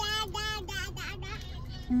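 A person's drawn-out, pleased 'mmm' hum through a full mouth while biting and chewing a seaweed-wrapped sushi burrito, the hum broken up by the chewing. A short 'mm-hmm' follows at the very end.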